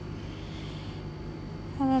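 A steady low hum, with faint scratching of a pen on paper in the first second; a voice starts speaking near the end.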